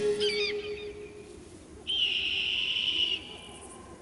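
A few quick warbling chirps, then a high, steady whistle-like tone held for just over a second, starting about two seconds in.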